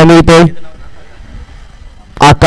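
A man's commentary voice that breaks off about half a second in, leaving only a faint, even background hum.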